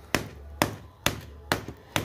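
Five sharp knocks, evenly spaced about half a second apart, on an old terracotta plant pot being broken open to free a root-bound cactus.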